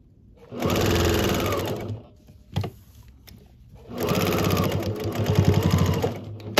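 Electric sewing machine stitching a fabric tab onto a terry kitchen towel in two runs, the first about a second and a half long, the second about two seconds, with a short pause between holding a few light clicks.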